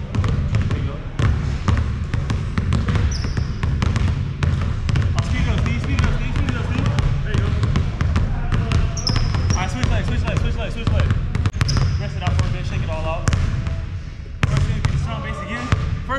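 Basketballs dribbled hard and fast on a hardwood gym floor, a steady stream of low bounces. A few short, high sneaker squeaks come through, and voices talk faintly in the background.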